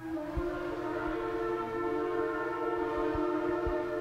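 Several long twisted shofars blown together in a long sustained blast, their pitches overlapping, with a second, higher-pitched horn joining in under a second in.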